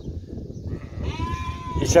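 A sheep bleating once, a single held call of about a second, over a steady low rumbling noise.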